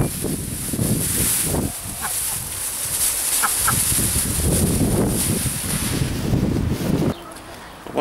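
Plastic carrier bag rustling and crinkling as grass is shaken out of it, with chickens clucking close by. The rustling stops about seven seconds in.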